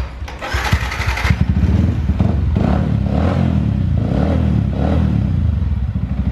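Yamaha FZ155 (V-Ixion R) 155 cc single-cylinder engine started on the electric starter, catching about a second in and then idling steadily.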